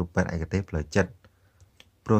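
A narrator's voice speaking for about a second, then a short pause broken only by a few faint clicks.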